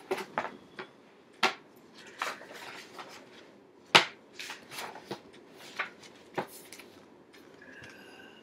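A string of sharp knocks, taps and rustles from papers and a framed picture being handled and moved about, the loudest knock about four seconds in.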